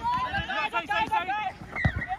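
Several people shouting and calling out, the words unclear, with one sharp knock near the end.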